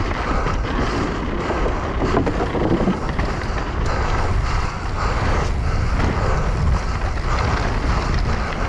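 Wind rushing over an action camera's microphone on a mountain bike descending a dirt trail, with tyre rumble and frame and chain clatter over bumps, busiest about two to three seconds in.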